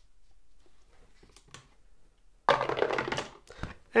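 Two six-sided dice rolled into a dice tray: about two and a half seconds in they rattle for about a second, then settle with a few clicks. Faint handling noise comes before.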